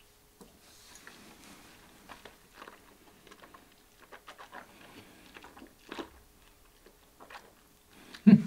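Faint wet mouth sounds of a man sipping whisky and working it around his mouth: small scattered smacks and clicks of lips and tongue.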